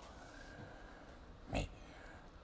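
A pause in a man's speech: faint room hiss, then one short spoken word ("mais") about one and a half seconds in.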